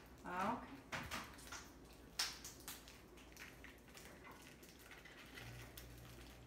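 Quiet kitchen handling: a few light clicks and knocks as soft goat cheese is unwrapped and spooned into a food processor bowl. A faint low hum comes in near the end.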